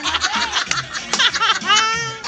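People laughing, with high, childlike laughter, over music playing in the room.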